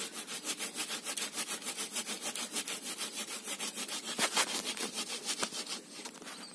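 Hand saw cutting through a living waru (sea hibiscus) branch in quick, even strokes, about six a second.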